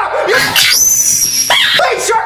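Sped-up, pitch-shifted loop of the screaming shark meme's audio: the shark puppet's shrill scream and the puppet's shouted voice repeat about every two seconds, sounding high and squeaky, almost animal-like.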